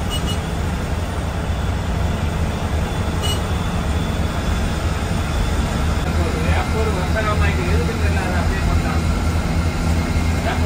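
Steady drone of a bus engine and road noise heard from inside the cabin while the bus cruises at highway speed, overtaking.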